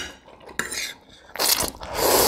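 A person slurping instant noodles off a fork, with the fork scraping and clinking on a ceramic plate. There is a short noisy burst about half a second in, then a longer, louder slurp in the second half.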